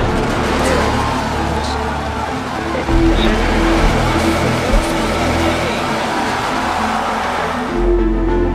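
Falcon Heavy rocket's engines firing at lift-off, a dense rushing noise mixed with trailer music that holds a steady low note. The launch noise cuts off abruptly near the end.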